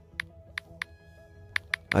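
Soft background music with several short keypress clicks from a smartphone's on-screen keyboard as letters are typed.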